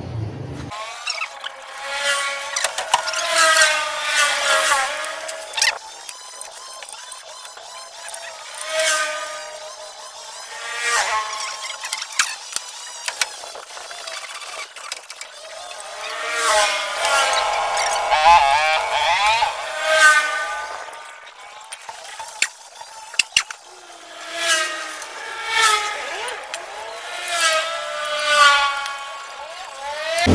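Thin, high-pitched gliding tones in phrases of a second or two, like a fast high voice or a melody, with no low end at all.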